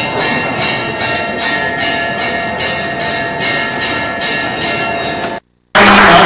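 Bells ringing in an even rhythm, about two and a half jingling strokes a second, over steady sustained ringing tones. Near the end the sound cuts out abruptly for a moment, then loud applause bursts in.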